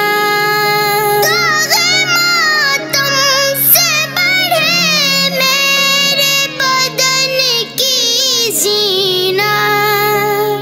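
A boy's solo voice singing a manqabat, an Urdu devotional song, in long, ornamented lines, with a chorus of boys' voices holding notes beneath.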